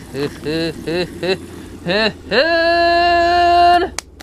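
A man singing or vocalizing without words: a few short quick syllables, then one long held note starting a little past two seconds in.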